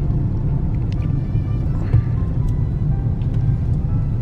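Steady low rumble of car road and engine noise heard from inside the cabin while driving slowly, with faint music in the background.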